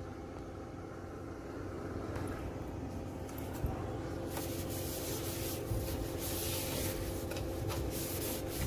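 Damp tissue rubbing and wiping around the inside of an excavator's air filter housing, in irregular strokes that start about four seconds in, cleaning out dust. A steady low hum runs underneath.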